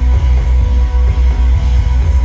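Live rock band playing a loud instrumental passage: electric guitars over bass and a drum kit, with the bass pulsing on a steady beat.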